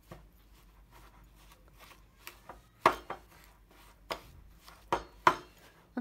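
Metal spoon clinking and scraping against a ceramic bowl while mashing softened butter into brown sugar and cinnamon. Quiet scraping is broken by a few irregular sharp clinks, the loudest about three seconds in and twice near five seconds.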